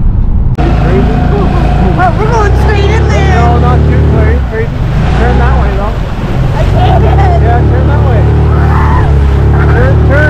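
Small outboard motor running steadily as an inflatable dinghy crosses rough rip-tide water, with people shouting and exclaiming over it. About half a second in, a cut from a car's cabin brings in the boat sound.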